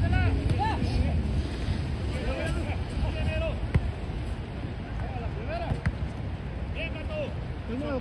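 Players calling and shouting to each other across a soccer pitch, with wind rumbling on the microphone. A sharp knock about four seconds in and another near six seconds are a soccer ball being kicked.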